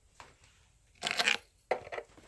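Handling sounds: a small click, then a short scraping rustle about a second in, and a sharp knock near the end.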